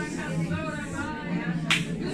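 A single sharp snap or click about three-quarters of the way through, like a finger snap, over voices speaking or praying quietly in a small room.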